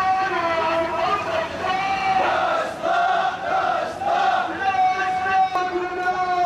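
A marching crowd of protesters chanting slogans together, many voices in repeated shouted phrases.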